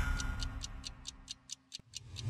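A ticking clock sound effect from a TV title sequence: about eight crisp, evenly spaced ticks, roughly four a second. The tail of the theme music dies away under the first ticks.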